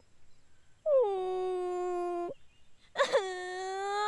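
A young woman wailing in exaggerated crying: two long, level-pitched wails, the first starting about a second in and lasting about a second and a half, the second starting about a second before the end.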